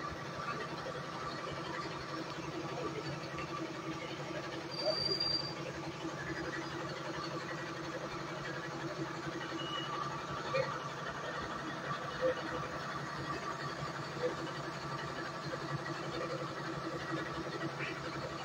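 A steady engine drone runs throughout, with a short high beep about five seconds in.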